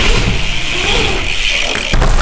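BMX bike rolling fast over wooden skatepark ramps: a steady high whirring hiss from the tyres and coasting hub, with a low rumble underneath.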